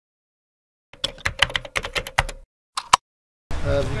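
Computer keyboard typing: a quick run of sharp key clicks for about a second and a half, then two more clicks, each set cutting off into dead silence.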